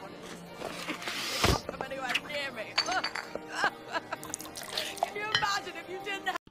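Party background: music and crowd chatter with glass bottles and glasses clinking, and one sharp hit about a second and a half in.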